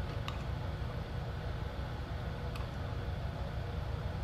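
Steady low room hum with two faint clicks, about a third of a second in and again past two and a half seconds, as a dial spring scale is handled.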